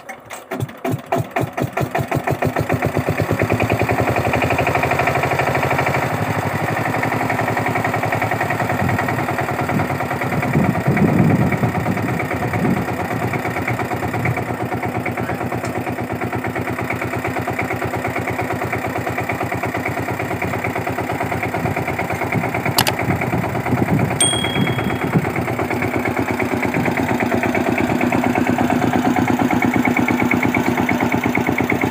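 Kamco power tiller's single-cylinder diesel engine catching after hand-cranking. Its separate firing beats speed up and grow louder over the first few seconds, then it settles into a steady run.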